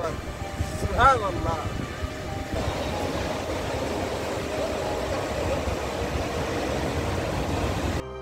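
A man's short exclamation about a second in, then the steady rush of a fast mountain river pouring over boulders.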